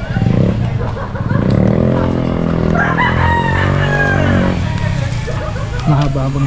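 A rooster crowing once: one long call of about three seconds that rises at the start and then holds.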